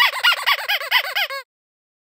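A high-pitched laugh: a quick run of about eight 'ha' syllables falling in pitch, cut off abruptly after about a second and a half.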